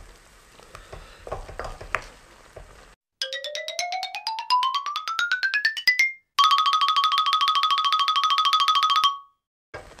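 A wooden spoon stirs food in a sizzling wok faintly for about three seconds. Then a loud synthetic effect cuts in: a rapidly pulsing electronic tone that rises steadily in pitch for about three seconds, then a steady buzzing pulsed tone for about three seconds that cuts off suddenly.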